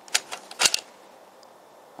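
Plastic tokens of a 3D-printed Binary Disk puzzle being pushed across the disk, each clicking as its magnet snaps it into place: about four sharp clicks in quick succession within the first second.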